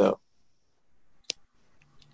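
A spoken word ending, then a pause broken by a single sharp click just over a second in, with a faint low hum near the end.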